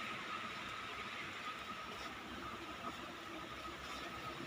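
Steady background hiss of a shop's room tone, with a faint steady high whine running under it.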